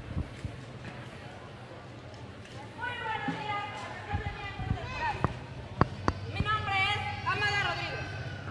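A person's voice calling out in long, rising-and-falling phrases from about three seconds in, with a few sharp knocks among it.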